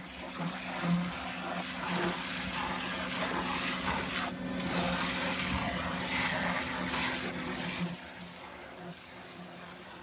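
Hydrovac excavation: the truck's vacuum system runs with a steady hum under a rushing hiss as the high-pressure water wand blasts the soil and the slurry is sucked up the dig tube. The level drops noticeably about eight seconds in.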